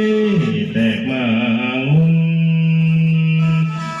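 Lao morlam singing accompanied by a khaen, a bamboo free-reed mouth organ, which plays a steady sustained drone of chords throughout. Over it the voice holds a note, moves through a wavering, ornamented phrase about a second in, then holds a long low note from about two seconds in until near the end.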